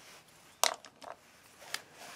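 Small clicks from handling marker pens on a desk while swapping one marker for another: one sharp click about half a second in, then a few fainter ticks.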